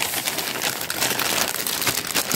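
A thin plastic grocery bag and a frozen-food bag crinkling and rustling as a hand rummages in the bag and pulls a package out, in a quick, uneven patter of crackles.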